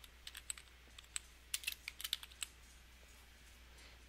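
Computer keyboard being typed on: a quick, light run of key clicks that stops about two and a half seconds in.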